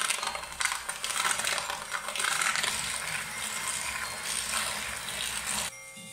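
Spoon beating soft butter and cane sugar together in a ceramic bowl: continuous scraping and stirring against the bowl.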